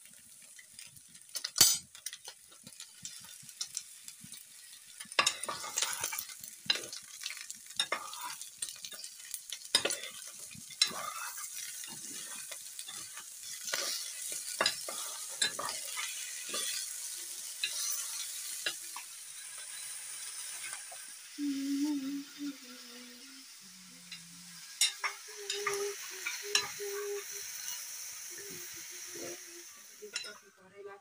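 Vegetables sizzling in a frying pan while a metal spatula stirs and scrapes them, with repeated scraping clicks against the pan and a sharp knock about two seconds in.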